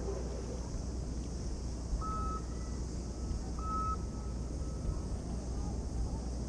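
Steady outdoor background of low rumble and high hiss, with two short electronic beeps about a second and a half apart near the middle.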